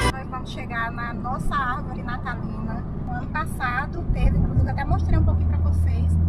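Steady low rumble of a car's engine and tyres heard inside the moving car's cabin, growing louder about four seconds in, under a person talking.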